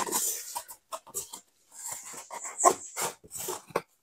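Styrofoam board squeaking and scraping against the ceiling in short, irregular squeaks as it is slid forward and pressed into place.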